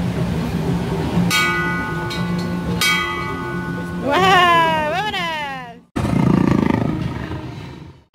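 A hanging brass bell rung by pulling its rope: a clang about a second in, struck again near three seconds, ringing on with a cluster of steady tones. Then a loud, wavering call that falls, rises and falls in pitch, followed by a low rumbling noise.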